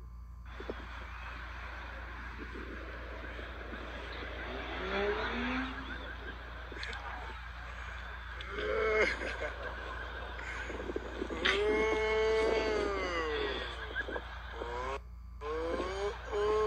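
Voices over steady outdoor background noise: a small child's high-pitched vocal sounds, including one long drawn-out call about twelve seconds in, with adults' voices.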